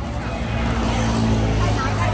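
An engine running nearby with a low steady drone that gets louder about half a second in, under people talking.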